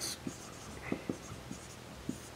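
Marker pen writing on a whiteboard: a handful of short, faint strokes as a word is written.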